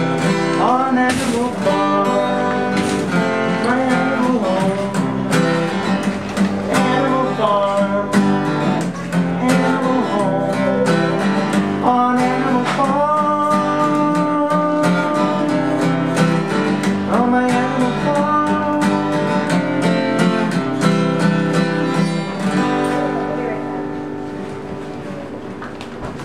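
Steel-string acoustic guitar strummed and picked through a song, with a voice singing over it at times; the playing grows quieter near the end.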